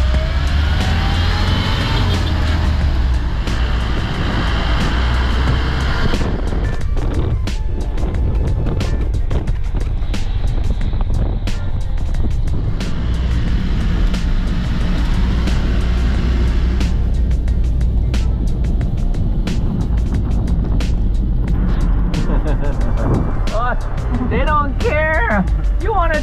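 Steady low rumble of a vehicle driving, heard from inside the cabin, with many small knocks and rattles. Music plays over it throughout.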